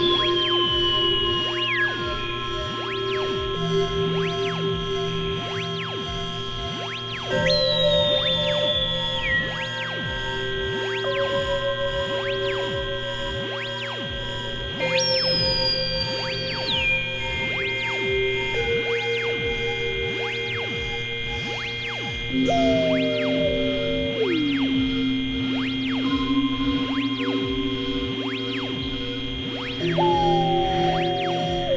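Experimental synthesizer drone music from a Novation Supernova II and Korg microKORG XL: several held tones layered over a steady low hum, with a pulsing repeated note. About every seven and a half seconds a new tone enters high and slides down in pitch before settling and holding.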